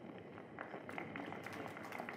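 Faint, scattered clapping from an outdoor audience: light irregular claps over low background noise.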